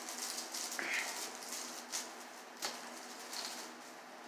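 Honeycomb kraft-paper packing wrap crinkling and rustling in intermittent spells as a bottle is unwrapped, with a couple of light knocks.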